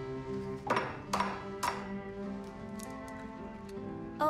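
Background film music with held notes, over three sharp ringing taps about half a second apart, starting under a second in: an egg being knocked against the rim of a bowl to crack it.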